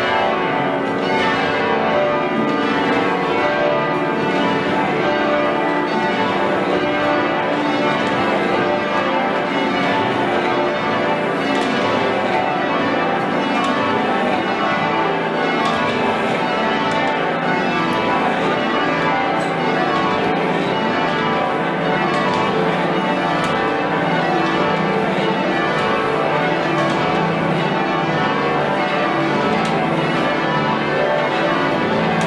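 Whitechapel-cast church tower bells, the back ten of a ring of twelve, being rung up (risen) in peal. Many bells strike in a continuous, overlapping clangour at steady loudness.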